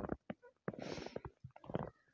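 Footsteps crunching in snow, several steps in irregular succession, the longest and loudest about a second in.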